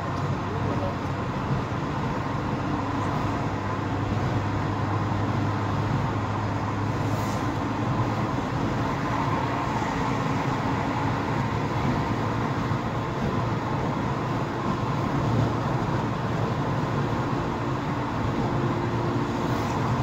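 Steady car engine and road noise heard inside the cabin of a car moving in slow traffic, with a low hum underneath.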